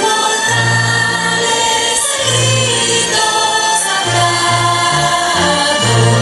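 Music: a choir singing over instrumental accompaniment, with held bass notes changing every second or so.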